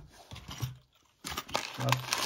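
Paper and plastic packaging crinkling and rustling as hands unwrap a bag of small hardware. The crinkling starts about halfway through, after a brief quiet moment, and a man's voice begins right at the end.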